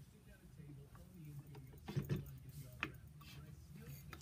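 A few faint, sharp clicks from small-parts handling as a copper push rod is worked to draw the reed back inside a wooden game call, over a low steady hum.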